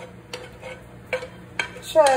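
A few short, light knocks or taps, spread about every half second, over a faint steady hum; a voice starts just at the end.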